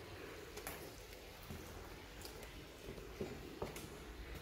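A quiet room with a low hum and a few faint, scattered clicks and rustles of handling noise.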